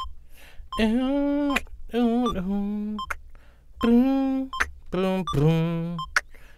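A man hums a wordless melody in short phrases with sliding pitch, over faint short beeps at a steady beat of about 78–80 per minute from FL Studio's tempo tapper.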